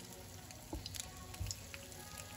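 Egg-coated tikoy slices frying in oil in a pan over a low flame: a faint sizzle with scattered small pops and crackles.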